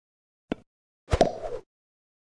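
Sound effect of a tennis ball being hit: a light pop about half a second in, then a louder ball-on-racquet strike about a second in with a short tail.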